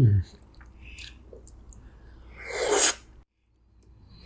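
A short falling "hmm" hum of enjoyment, then faint chewing and wet mouth clicks from eating rainbow layer cake. Near the end comes a loud breathy puff of air lasting about half a second, and the sound then cuts off abruptly into silence.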